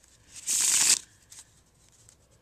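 A deck of playing cards riffle-shuffled on a table: one quick riffle lasting about half a second, followed by a few faint clicks as the deck is handled.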